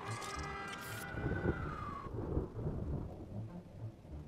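Thunder rumbling over steady rain. A high gliding tone fades out about halfway through.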